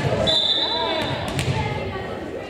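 Volleyball referee's whistle: one short, steady, high blast about a quarter second in, signalling the server to serve. Crowd chatter and a couple of ball bounces on the hardwood gym floor run underneath.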